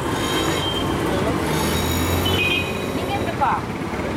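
Busy street noise: steady traffic with snatches of voices. A heavier vehicle's low rumble and hiss swells in the middle and fades.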